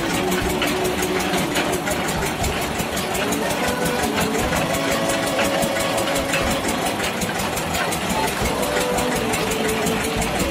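Engine of a tractor-mounted borewell drilling rig running steadily, with a fast, even mechanical beat and no pauses.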